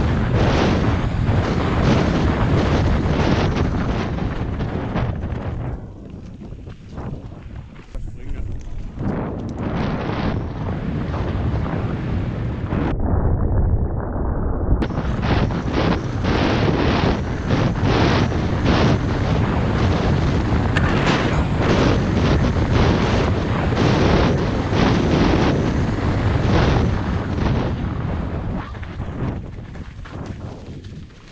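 Wind buffeting the camera microphone over the continuous rattle and clatter of a Canyon Torque full-suspension mountain bike bouncing downhill at speed over roots and rocks. It eases off for a few seconds about six seconds in.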